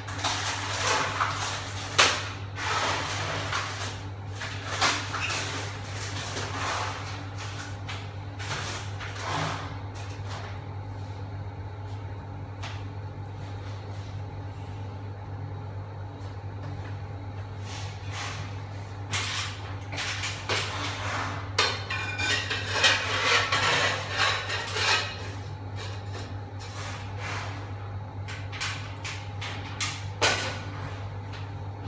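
Scattered knocks, clatter and handling noises from things being moved about, busiest in the first few seconds and again past the middle, over a steady low hum.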